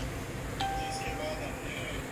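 A single steady beep-like tone that starts about half a second in and holds for just over a second at one unchanging pitch.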